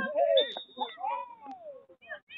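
Shouting voices, one long call falling in pitch, and a referee's whistle blown once briefly about half a second in, signalling a stop in play.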